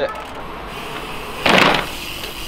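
Dirt jump mountain bike rolling toward a small plywood kicker ramp, then a short, loud rush of tyres over the ramp about one and a half seconds in as the rider takes off.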